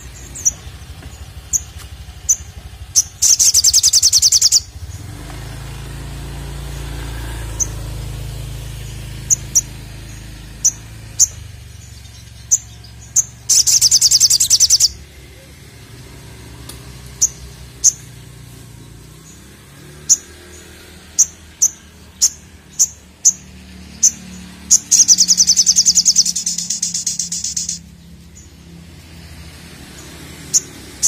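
Olive-backed sunbird (sogok ontong) singing: sharp single high chirps at uneven intervals, broken by three loud, rapid trills about a second and a half to three seconds long, the last one the longest.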